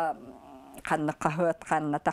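A woman speaking, with a short pause just after the start.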